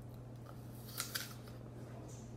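Crisp crunch of teeth biting into a raw apple: two sharp crunches close together about a second in.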